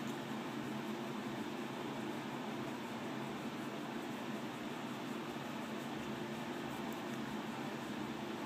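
Steady low hum with a hiss, a room's mechanical background noise. It holds level throughout with no distinct knocks or clicks.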